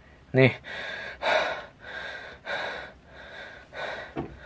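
A man breathing heavily and quickly in and out, about five breaths in three seconds, close to the microphone, after a short spoken word. He is out of breath after running and is tired.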